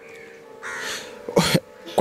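Crows cawing: a fainter call about half a second in, then a short, loud caw about one and a half seconds in, over a faint steady hum.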